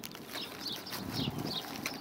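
A small bird chirping repeatedly in short, falling, high notes, about three or four a second, with wind on the microphone.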